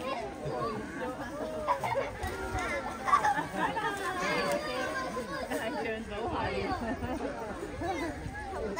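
Crowd chatter: many visitors' voices talking over one another at once, with no single speaker standing out.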